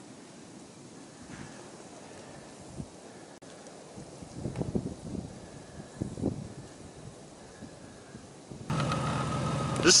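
Quiet outdoor stillness with a few soft rustles, then, near the end, a truck's engine running steadily comes in suddenly.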